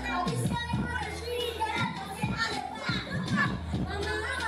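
A young boy's voice through a microphone and PA, performing over background music, with a steady low hum underneath.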